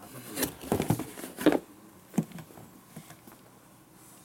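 Handling noise as an AEG ST500 jigsaw is lifted out of its cardboard box and set down: a run of light knocks and rustles, the loudest about a second and a half and two seconds in, then a few faint ticks.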